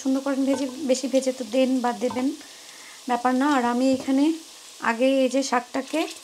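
Sliced onions, garlic and green chillies sizzling in hot oil in an aluminium pan, stirred with a wooden spoon. A woman's voice talks over it in three stretches, with the sizzle heard alone in short gaps.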